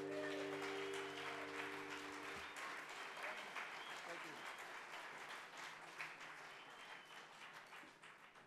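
Final acoustic guitar chord ringing and then damped about two seconds in, over audience applause that slowly fades away.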